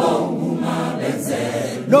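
Large mixed choir of men and women singing in harmony, with a loud new phrase entering near the end.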